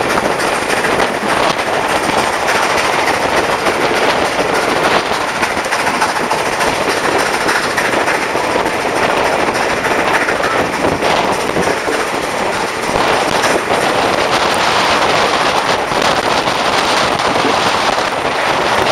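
Steam-hauled passenger train heard from a coach window while under way: a dense, steady rattle of rapid beats from the 4-8-2 steam locomotive and the wheels on the rails, with wind buffeting the microphone.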